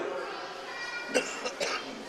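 A pause in the amplified talk: faint background voices in the room, and a short cough a little past a second in.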